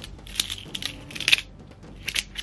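A fresh deck of glossy oracle cards being thumbed and separated with long fingernails: a run of crisp crackles and clicks from the card edges, the loudest a little past a second in.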